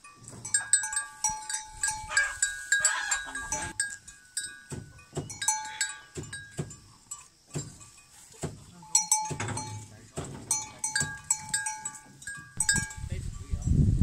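Metal bell on a cow's neck strap clanking irregularly as the cattle move and graze, each clank ringing briefly at the same few fixed pitches. Near the end a low rumbling noise takes over.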